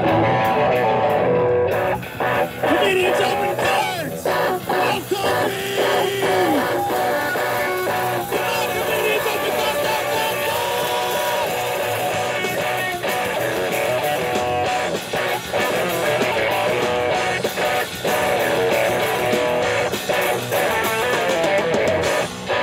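A small rock band playing live: electric guitars with drums, loud and steady throughout.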